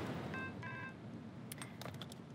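Two short electronic beeps from a mobile phone as a call is ended, followed by two faint clicks near the end.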